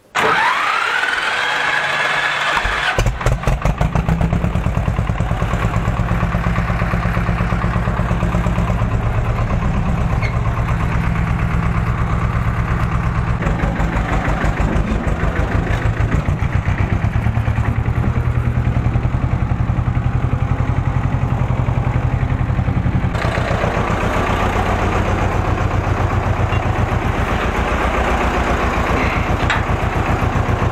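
Ursus C330 tractor's two-cylinder diesel engine being started: the starter whines, rising in pitch, for about three seconds, then the engine catches and runs on steadily with a fast, even knocking beat.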